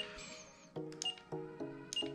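Futaba T7PXR radio transmitter giving short high beeps about once a second as its trim dial is turned, over faint steady tones that step in pitch.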